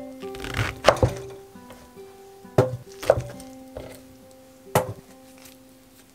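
A chef's knife slicing king oyster mushroom on a wooden cutting board, the blade knocking sharply on the board four times at uneven intervals. Soft background music plays underneath.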